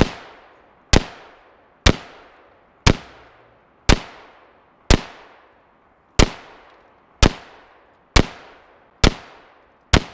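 Colt AR-15A2 rifle firing 5.56 NATO steel-core rounds in a steady string of about ten single shots, roughly one a second. Each sharp crack is followed by an echo that dies away before the next shot.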